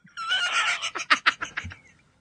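A man laughing: a breathy, high-pitched laugh in a run of quick bursts that trail off.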